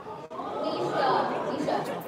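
Indistinct overlapping voices echoing in a large hall: audience chatter. There is a brief dropout in the sound just after the start.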